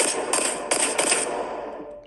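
Semi-automatic pistol shots from a TV promo, about five in quick succession over the first second and a half, fading off after. Heard through a tablet's speaker.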